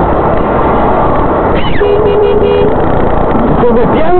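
Engine and road noise inside a moving car on a dashcam, with a car horn honking in a few quick toots about two seconds in. Voices in the car start just before the end.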